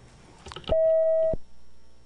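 A single electronic beep: one steady tone, a little over half a second long, starting and stopping abruptly about three-quarters of a second in.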